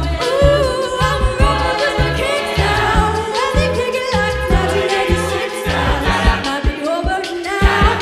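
Mixed a cappella group singing live: a lead voice over backing vocals, with vocal percussion keeping a steady beat of low bass pulses and clicks.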